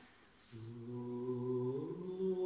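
Unaccompanied low voice humming a long held note, entering about half a second in after a brief hush and sliding up in pitch near the end.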